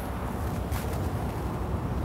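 Steady low background rumble of outdoor ambience, with no distinct sound standing out.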